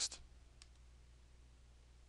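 A single faint mouse click about half a second in, over a low steady electrical hum.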